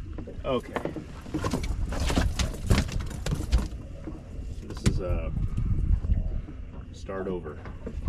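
A quick run of knocks and clatter from fish and tackle being handled in a fishing boat, loudest in the second and third seconds, over a steady low rumble; short snatches of voices come and go.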